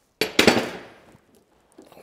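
A sudden clatter of metal tools at a bench vise: two quick knocks close together, ringing away over about half a second.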